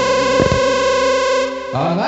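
A live band's closing chord on the final beat of the song: electric guitar with distortion and effects and keyboard held together, with one drum hit about half a second in. The chord dies away about a second and a half in.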